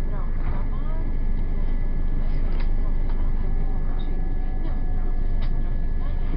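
Inside a moving passenger train: the steady rumble and running noise of the train, with a steady high whine throughout and a few sharp clicks.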